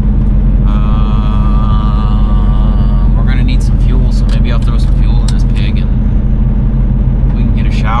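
Mack semi truck's diesel engine running steadily while driving, a constant low drone heard inside the cab.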